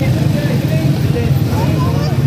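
A motor vehicle engine idling with a steady low rumble, with indistinct voices in the background.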